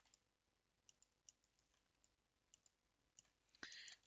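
Near silence with a few faint, scattered clicks of a computer mouse, and a brief soft hiss near the end.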